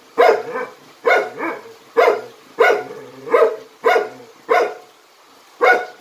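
A Jindo dog barking repeatedly: about eight loud, sharp barks, one every second or less, with a short pause before a last bark near the end.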